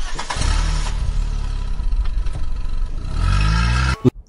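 Vehicle engine sound effect: a steady engine running, rising in pitch as it revs up near the end, then cutting off abruptly.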